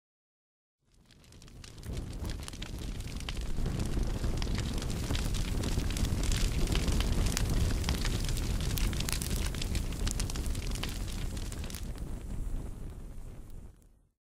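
A fire roaring, with many sharp crackles. It fades in over the first few seconds and fades out near the end.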